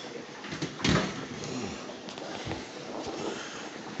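A kitchen oven door shut with a single sharp knock about a second in, followed by a few fainter handling clicks.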